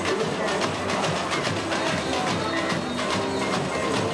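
Samba music with a fast, dense drum-section beat under voices singing.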